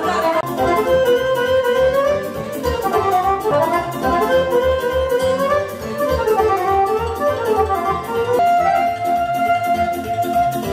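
Live dance music with a Roland digital accordion: a winding, gliding lead melody over a steady beat.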